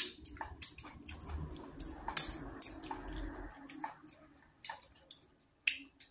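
Close-up wet eating sounds: sticky, squishy clicks and smacks of chewing and of fingers working thick leafy Afang soup, quieter after about four seconds.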